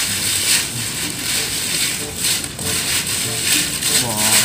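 Irregular rustling and crackling as hands work among the contents of a woven basket.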